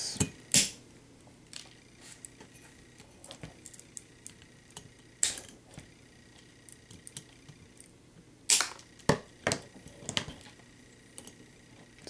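Scissors snipping the excess tails off plastic zip ties: a few sharp snaps, two about half a second apart at the start, one near the middle and a quick run of three or four near the end, with light handling ticks between.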